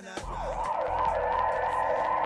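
A siren sound effect wailing up and down in quick, even sweeps, about two a second, over a low steady hum, as a dub reggae track opens.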